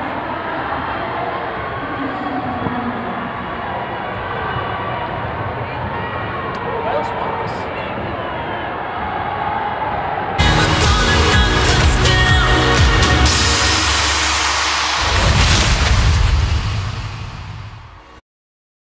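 Arena crowd murmur, a steady hum of many voices. About ten seconds in, loud broadcast sting music starts suddenly, then fades out near the end.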